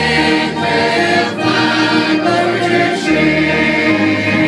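Mixed church choir of men and women singing a gospel hymn together, the voices held on sustained chords.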